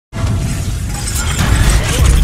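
Logo-intro sound effect: a shattering crash that starts suddenly, over a deep bass rumble that grows louder as it goes.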